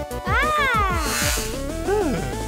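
Bouncy cartoon background music with a steady beat, over which a single high, cat-like vocal cry rises and then falls in pitch for about a second.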